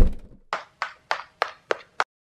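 Animated-logo sound effects: a deep thump that dies away over about half a second, then a run of short, sharp clicks, about three a second, that keeps time with steps building up in the logo.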